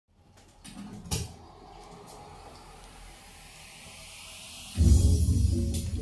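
Bass-heavy music from a JBL PartyBox 100 portable party speaker, kicking in loudly just before the five-second mark. Before it there are a few quiet seconds with one short knock about a second in and a slowly rising hiss.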